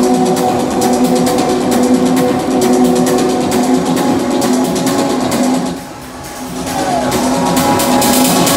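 Loud electronic dance music from a DJ over a sound system, with a steady beat and sustained synth tones. The music dips briefly about six seconds in, then builds back up.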